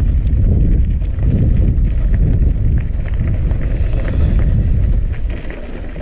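Mountain-bike knobby tyres rolling over loose gravel, a steady crunching rumble full of small ticks, with wind buffeting the microphone.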